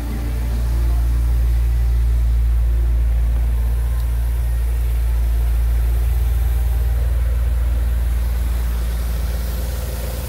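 A Chevrolet Vectra's four-cylinder engine idling: a steady, loud low hum heard from beside the car.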